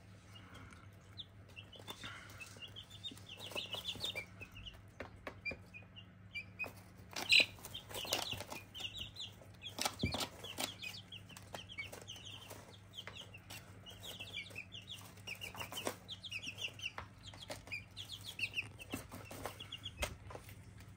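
Two-week-old chicks in a brooder cheeping: many short, high peeps in quick runs, with a few sharp taps, the loudest about seven seconds in, and a low steady hum underneath.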